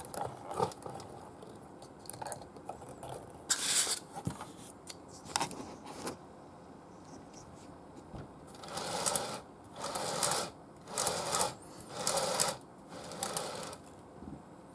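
Small clicks and knocks of a die-cast metal and plastic toy robot figure being handled and fitted onto its plastic display base, followed near the end by a run of soft rustling swishes.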